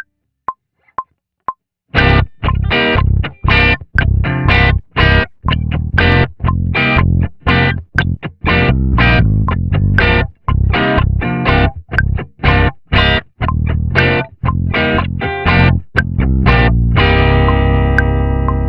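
Metronome count-in clicks, then a crunchy overdriven electric guitar and an electric bass playing short, choppy chords together about twice a second over the metronome click, ending on a held chord that rings out near the end. The takes are unedited, with timing still to be corrected.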